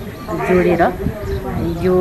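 A woman speaking, with short pauses between phrases.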